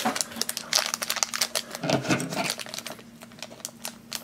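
Crinkly plastic blind-bag wrapper being squeezed and handled, a quick run of small crackles.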